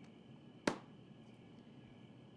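A laptop lid being shut with a single sharp click about two-thirds of a second in, over faint room tone.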